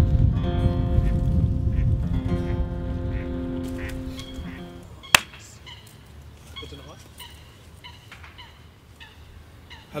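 Two long held chords on a reedy-sounding instrument over a loud low rumble, the second fading out about five seconds in. A single sharp click follows, then quieter open-air background with faint short high chirps.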